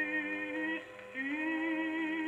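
Home-made acoustic gramophone with an eight-foot papier appliqué horn and a Columbia No. 9 soundbox playing a vocal record: a singer holds two long notes with vibrato, broken by a short pause about a second in.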